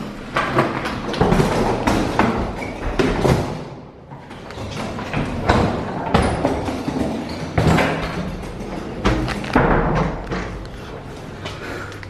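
An irregular run of thumps and thuds from footsteps on a hard corridor floor, with doors being pushed through.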